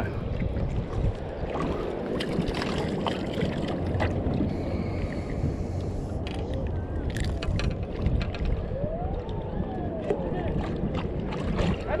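Steady wind and water noise around a small fishing boat at sea, with faint voices and a few light clicks and knocks from handling about halfway through.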